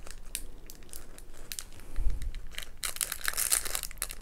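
Clear plastic bag crinkling as it is handled, with a thick run of crackles in the last second and a soft low thump about two seconds in.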